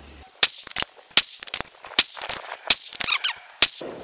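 Gunfire: a rapid run of sharp cracks, about a dozen in four seconds, with quiet between them.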